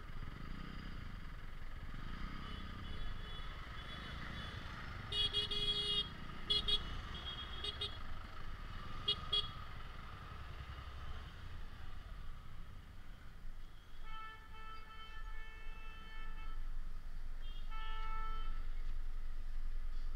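Vehicle horns honking in slow, jammed traffic over a steady low rumble of engines. A cluster of short toots comes a few seconds in, then one horn is held for about two and a half seconds, and another sounds briefly near the end.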